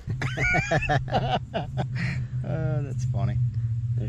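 Men talking and laughing, with a laugh about halfway through, over a steady low hum.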